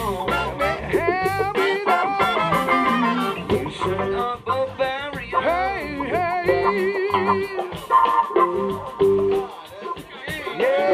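A live funk band playing, with electric guitar, keyboard, bass and saxophones over a steady drum beat.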